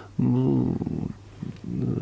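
A man's voice making a drawn-out filler sound of just under a second, not a word. A shorter, quieter vocal sound follows near the end.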